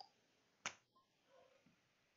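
Near silence with one short, sharp click about two-thirds of a second in, followed by a few very faint soft handling sounds.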